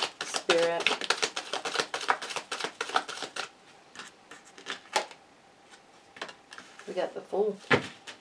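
A tarot deck being shuffled by hand: a rapid run of card clicks for about three and a half seconds, then a few scattered soft taps as a card is drawn and laid on the table.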